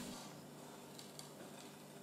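Near silence: room tone with a couple of faint ticks.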